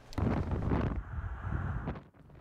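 Wind buffeting a microphone over the low rumble of traffic, starting abruptly just after the start.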